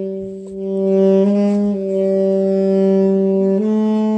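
Saxophone playing long held notes, with a few slow steps in pitch: up about a second in, back down, and up again near the end.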